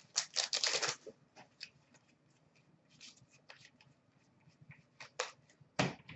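Hockey trading cards being handled and sorted: a quick run of card flicks and slides in the first second, then scattered faint clicks, and a couple of sharper card sounds near the end.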